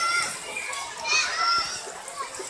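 Children's voices calling out as they play, with high-pitched shouts at the start and again about a second in.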